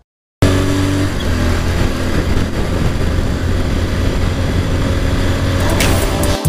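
A motorcycle running on the road while being ridden, its steady engine hum under a rush of wind and road noise. It starts abruptly about half a second in.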